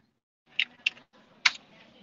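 A few short, faint clicks spread over about a second, with near silence between them, heard over a video-call line.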